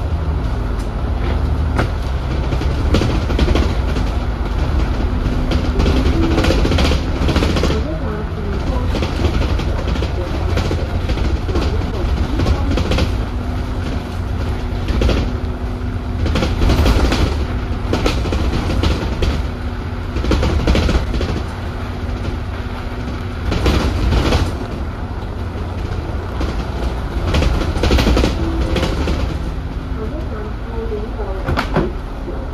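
Interior of an Alexander Dennis Enviro400 double-decker bus on the move: a steady low drivetrain rumble with a hum through the middle stretch, over frequent rattles and knocks from the bodywork and fittings.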